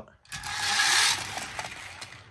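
A die-cast Lightning McQueen toy car rolling fast down a grey plastic toy road-track ramp, its wheels running over the plastic. The rolling noise comes in about a third of a second in, is loudest for about a second and then fades as the car slows.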